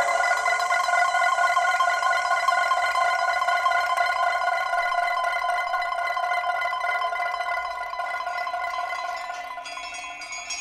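A single sustained ringing tone with several steady overtones, sounded by a sharp attack just before and fading slowly, in a piece for pipa and pre-recorded electronic sounds. A new, higher sound enters near the end.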